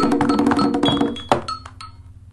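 Closing bars of a recorded ponto (Umbanda chant) as the singing stops: hand percussion keeps striking in rhythm, lands one last strong hit about a second and a half in, and then dies away.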